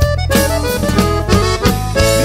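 Instrumental passage of a norteño corrido: accordion playing a melody over a steady bass line.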